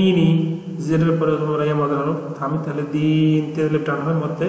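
A man reciting Quranic Arabic in a slow, melodic chant (tajweed recitation), drawing out long held vowels. He breaks briefly just before a second in, then carries on.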